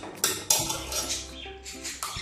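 Metal spoon clinking against a ghee tin and a stainless-steel cooking pot, with two sharp clinks in the first half second.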